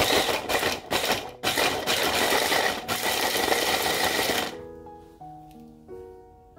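Electric mini chopper with a press-down motor top chopping a carrot. It runs in bursts with a few brief breaks and stops about four and a half seconds in, after which background music is heard.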